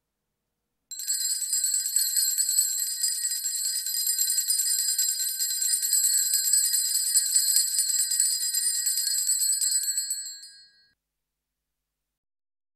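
Altar bells, a cluster of small hand bells, shaken rapidly and continuously for about nine seconds, starting about a second in and dying away near the end. This is the ringing that accompanies the blessing with the monstrance at Benediction of the Blessed Sacrament.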